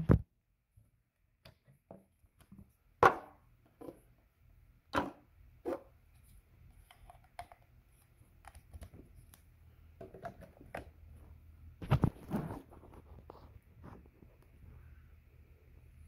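Handling noise: scattered clicks, knocks and light rubbing as a plug-in phone charger is swapped in a plug-in power meter, with the louder knocks about three, five and twelve seconds in.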